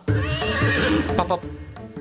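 A trembling, high-pitched sound effect about a second long, laid over background music with a steady low bass.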